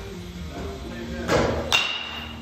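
Two sharp cracks about half a second apart, the second the bat meeting the baseball, slightly louder and ringing briefly. Background music plays underneath.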